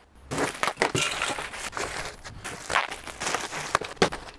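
Ice cubes being poured from a bag into a cooler packed with cans. They make a dense, continuous clatter that starts a moment in.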